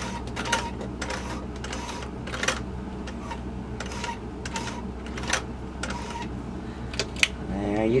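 Vintage Singer slant-shank sewing machine zigzag-stitching slowly over a button held under a button foot, giving a string of irregular clicks from the needle mechanism over a steady low hum. These are repeated passes across the button's holes to secure it.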